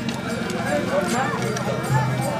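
People talking nearby, with light clicks and clinks from a hand-held beam balance as its metal pans and weights are handled.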